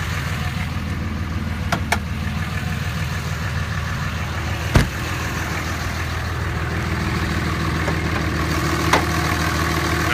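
The 5.9-litre Cummins inline-six turbo-diesel of a 2007 Dodge Ram 2500 idling steadily. A single sharp thump comes a little before the middle, with a few lighter clicks around it.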